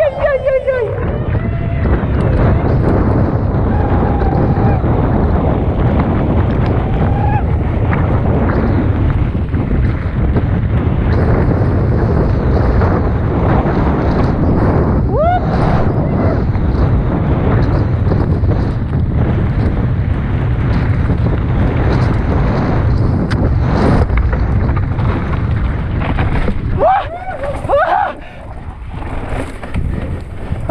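Loud, steady wind rumble on the microphone of a moving mountain bike, sustained for most of the stretch. A short call comes about halfway through, and a few voices come near the end as the rumble drops away.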